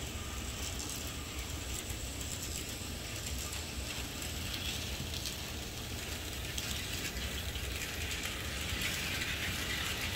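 N scale model train running on the track: the small locomotive's motor and gears whirring with a dense, fine clicking of wheels over the rails, growing a little louder over the last few seconds as it comes nearer.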